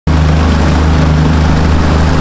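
Outboard motor on a small open aluminium skiff running steadily at speed, heard from on board, with a steady rush of wind and water over its low drone.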